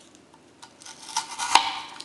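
Spyderco Delica folding knife blade slicing through a small strip of thin cardboard, meeting some resistance. A short run of crackling scrapes begins a little over half a second in and ends in a sharp click about a second and a half in.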